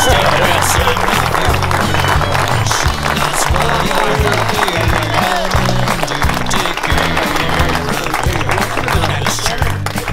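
A crowd applauding over background music with a steady bass line.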